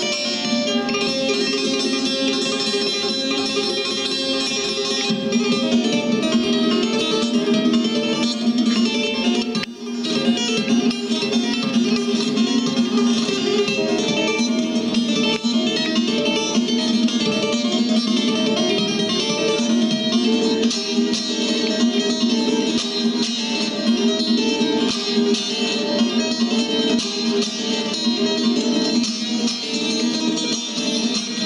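Solo bağlama (Turkish long-necked lute) played instrumentally: a fast, dense run of plucked notes, with a brief drop about ten seconds in before the playing carries on.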